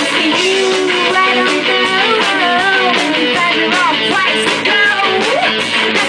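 Live indie rock band playing, with strummed electric guitar and women's voices singing over it.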